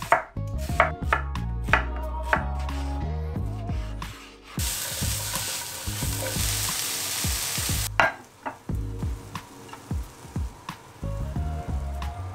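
A knife chopping red onion on a wooden chopping board, a stroke about every half second. About four and a half seconds in, vegetables start sizzling loudly in a hot frying pan, and the sizzle cuts off about three seconds later. Background music with a low bass line runs underneath.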